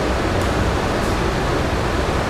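Steady background hiss with a low rumble: room noise in a pause between sentences of speech.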